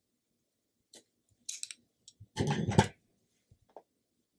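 Steel scissors snipping through a yarn tail with small sharp clicks, followed by a louder run of knocks and rustling as the work is handled. A last small click comes near the end.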